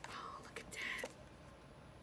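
Two soft whispered words, breathy and unvoiced, with a faint click or two of cards being handled.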